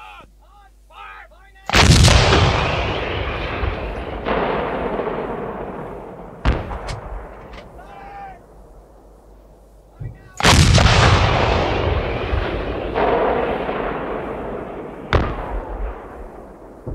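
Battle sound effects: two heavy explosions, each dying away slowly over several seconds, with sharp shot-like cracks in between. A short voice is heard in the first second and a half.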